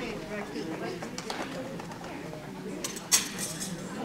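Indistinct voices murmuring in a large, echoing indoor hall, with one sharp snap, like a clap, about three seconds in.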